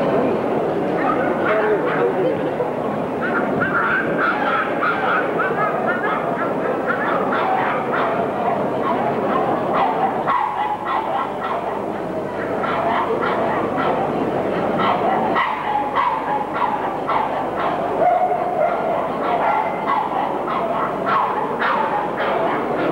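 Staffordshire Bull Terriers barking and yapping again and again over the steady chatter of a crowd.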